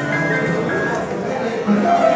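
Upright piano played solo in an instrumental break between sung verses, a melody moving over held chords.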